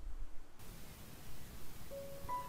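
Faint hiss and low background noise with no clear sound event; the background changes at an edit about half a second in. A soft held note of background music begins near the end.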